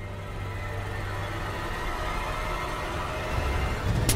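Tense dramatic background music: a low held drone that slowly swells in loudness.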